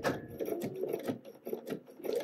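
Fabric rubbing, with irregular light clicks, as pinned wool gabardine pant fabric is shifted and lined up under a Bernina sewing machine's presser foot.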